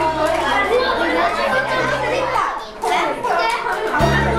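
Several children chattering and talking over one another in a room. Steady low notes of background music run under the voices for the first two seconds or so, then drop out.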